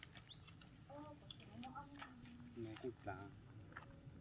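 Quiet outdoor ambience with faint distant voices talking in short phrases and a few faint clicks.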